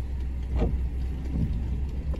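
Idling car engine heard from inside a stationary car: a steady low rumble, with a couple of faint brief sounds about half a second and a second and a half in.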